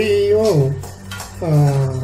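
Metal spatula stirring and scraping in an aluminium kadai of thick kali, with a few sharp clinks against the pan. A voice holds long sung notes over it, twice.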